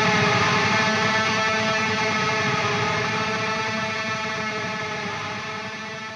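Final held chord of a heavy metal song, distorted electric guitars ringing out as one steady chord that fades away slowly.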